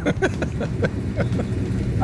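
The 426 Hemi V8 of a 1967 Plymouth GTX idling steadily, with a run of short sharp sounds, a few a second, over it.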